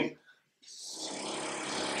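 Whiteboard marker drawn across a whiteboard in a long stroke, a steady scratchy squeak that starts about half a second in after a brief silence.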